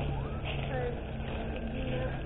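A steady low hum runs throughout, with faint voices in the background.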